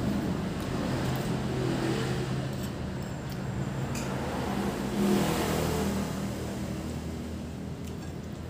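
A motor vehicle engine running, a low hum that rises and falls and swells about five seconds in. A few light clinks of a spoon against a ceramic bowl come around the middle.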